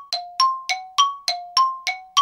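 Bell-like chime notes struck about three or four times a second, alternating between a higher and a lower pitch, each ringing briefly before the next.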